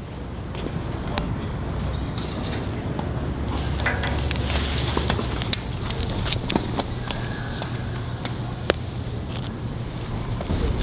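Outdoor ambience: a steady low rumble with a few scattered light clicks and taps from someone walking on a concrete sidewalk.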